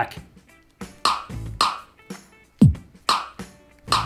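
Sony SRS-XB33 Bluetooth speaker playing short electronic drum and effect samples, about six separate hits with gaps between them, one with a falling low sweep a little past halfway. The samples are triggered by tilting a phone in the Fiestable app's motion control, which responds spottily.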